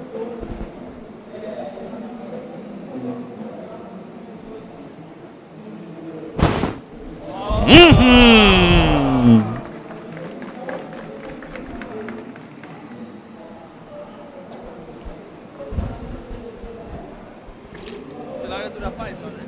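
A short sharp blast of breath blowing cornstarch powder through a flame to make a fireball. About a second later comes a loud, long exclamation of 'ooh' that falls in pitch, over a low murmur of the audience.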